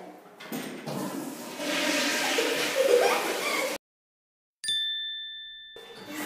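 A toilet flushing: a rush of water for about two seconds that cuts off abruptly. After a brief silence a single bright chime rings and fades.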